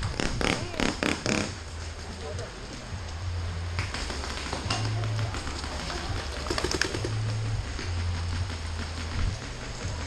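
Paintball markers firing: a quick run of shots in the first second and a half, then a few more about seven seconds in, with a low on-off hum between them.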